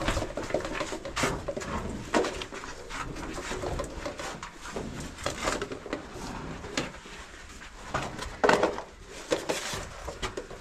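A caver crawling through a tight rock passage: irregular scraping, rustling and knocking of clothing and gear against the rock, with the loudest scrape about eight and a half seconds in.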